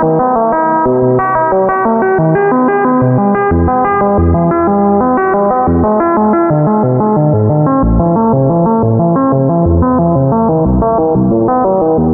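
Critter & Guitari Pocket Piano MIDI synthesizer playing rapid arpeggiated notes with heavy reverb. Low bass notes join about three and a half seconds in.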